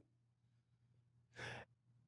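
Near silence, broken about one and a half seconds in by a single short breath in by a man, close to a headset microphone.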